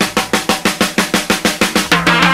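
Drum break on a 1969 blues-rock studio recording: the bass and other instruments drop out and the drums play a run of even, sharp strokes, about six a second. The full band comes back in right at the end.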